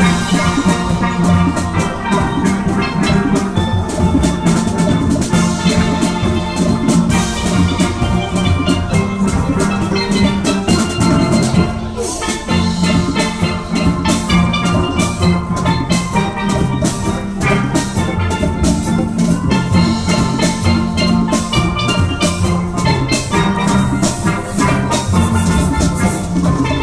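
A steel band playing steel pans with drums: continuous music with a steady beat and many ringing, pitched pan notes.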